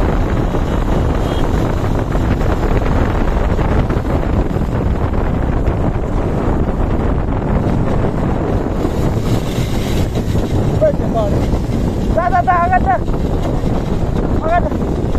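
Motorcycle on the move with heavy wind rushing over the microphone, the engine buried under the wind noise. Near the end a short wavering voice-like tone, the longest about a second, rises briefly over the wind a couple of times.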